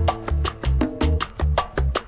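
Romantic salsa music in an instrumental passage: a run of evenly spaced percussion hits over a repeating bass figure, with no singing.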